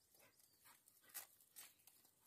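Near silence with a few faint, short clicks, the plainest about a second in.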